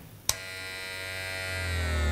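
A sharp click, then an electric buzzing drone whose pitch slowly sinks, with a deep hum swelling underneath in the second half.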